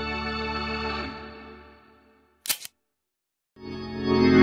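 Hammond organ holding a chord with a wavering swirl, fading out about two seconds in. A single brief sharp snap sounds in the gap, and the organ comes back in near the end.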